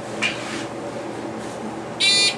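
Steady hum inside a Delaware hydraulic elevator car as it travels down between floors, with a brief rustle shortly after the start.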